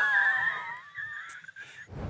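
A woman laughing hard in a high-pitched voice, the laugh dying away within about a second.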